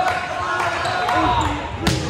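A volleyball smacked once on a jump serve near the end, a single sharp hit that rings briefly in a large gym, over the talk and calls of players and spectators.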